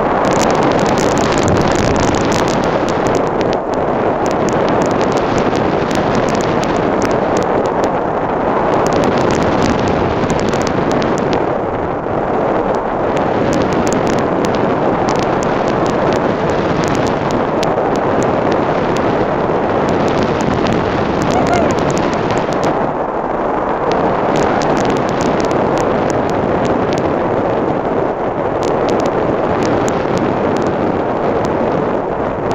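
Loud, steady rush of airflow over the microphone of a camera mounted on a hang glider in flight, with rapid flickering buffeting.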